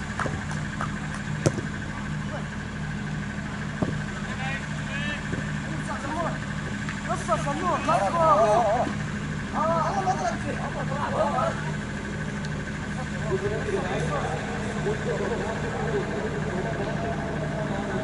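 Players' voices calling across a cricket field, loudest in the middle seconds, over a steady low hum and a thin high tone; two sharp knocks in the first few seconds.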